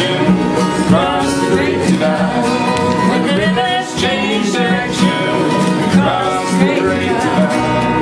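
Live acoustic folk music: acoustic guitars and a double bass playing together, with a woman's voice singing along.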